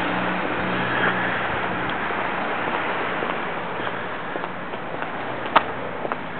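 Street traffic: a passing vehicle's engine hum fading into a steady wash of road noise, with one sharp click about five and a half seconds in.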